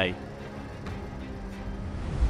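Steady outdoor street background noise with a low, even hum. A man's voice cuts off in the first instant.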